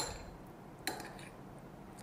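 A metal spoon clinks against a small glass bowl once, with a short high ring, as the mixing of a stuffing ends; a softer knock of dishware follows just under a second later.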